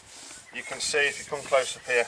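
A hand rubbing along the freshly sanded bare timber rail of a wooden boat, in several short strokes.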